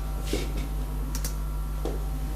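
A few sharp laptop-keyboard key clicks, the kind made in pressing a key to advance a presentation slide, over a steady low electrical hum.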